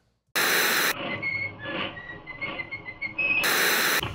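Old television static: two loud bursts of hiss, one near the start and one near the end, with quieter crackly hiss and faint wavering whistle tones between them, as of a set tuning in.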